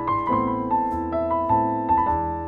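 Solo piano playing a melody of single notes, two or three a second, over held low notes.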